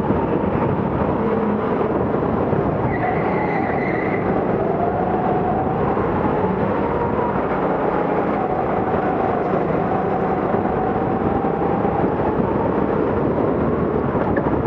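Go-kart engine running at speed on track, its pitch rising and falling as the throttle changes, under a heavy, steady rough noise.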